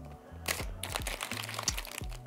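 Quiet background music with steady low notes, under a few light clicks and rustles of a cardboard box and a wrapped protein snack being handled.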